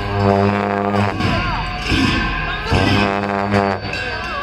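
Tibetan monastic ritual music for a cham dance: long dungchen horns sound two long held low notes of about a second each, with percussion strikes between them.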